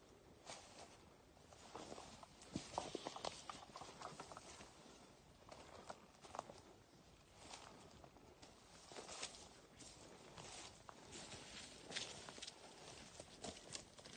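Faint, irregular footsteps on the forest floor, with soft crackles and rustles from leaf litter and twigs underfoot.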